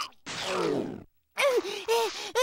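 A cartoon monster's wordless distressed voice: a falling groan, then after a brief pause a run of quick, wavering, rising-and-falling wails.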